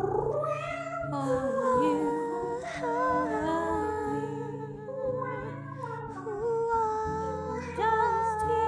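Wordless soprano singing by a woman, a melody of long held notes with vibrato that glide between pitches. It runs over a low, steady sustained accompaniment.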